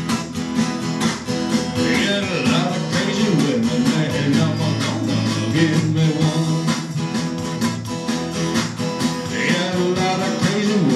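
Acoustic guitar strummed in a steady rhythm, with sustained low notes underneath, in an instrumental break of a blues song.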